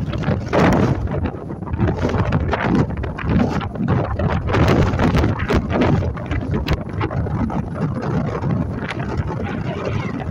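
Wind buffeting the microphone in gusts on the open deck of a Wightlink passenger catamaran under way, over the boat's steady engine and water noise.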